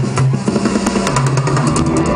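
Live band playing an instrumental passage: drum kit with steady cymbal and snare hits, sustained bass notes, electric guitar and keyboards.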